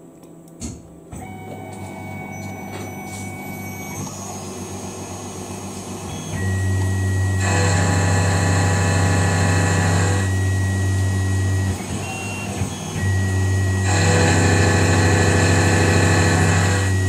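CNC milling machine running a 6 mm end mill at 2400 rpm through tool steel under flood coolant. A steady hum with a high whine builds over the first few seconds, then there are two spells of loud hissing cutting and coolant-spray noise, about seven and fourteen seconds in.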